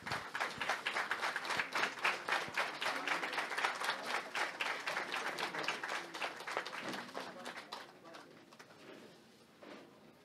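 Audience applauding, a dense patter of many hands clapping that thins out and fades away about eight seconds in.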